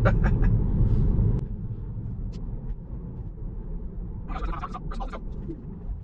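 A man's short laugh, then low tyre and road rumble inside a Tesla Model 3's cabin. About a second and a half in, the rumble drops to a much quieter low hum, with a brief higher burst of sound a little past the middle.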